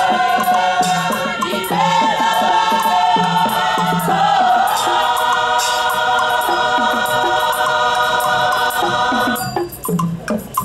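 A women's choir singing in harmony with long held notes over a soft low beat. Near the end the singing stops and sharp percussive knocks begin.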